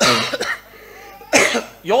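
A man coughs twice, loudly and close to a microphone. The second cough comes just under a second and a half after the first.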